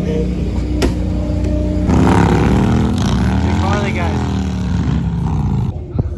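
Motorcycle engine running, then revving louder about two seconds in, its pitch rising and falling as it passes.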